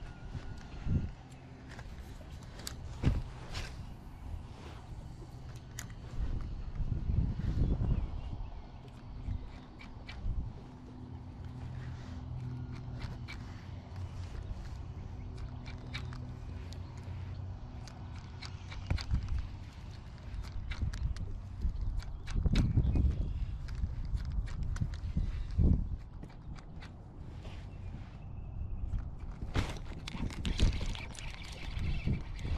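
Close handling of a fishing rod and spinning reel aboard a kayak: scattered small clicks and knocks. There are low rumbles, likely wind or handling on the microphone, and a faint steady low hum in the middle stretch.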